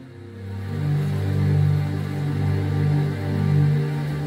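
Slow background music of held low chords, swelling in about half a second in and sustained without a beat.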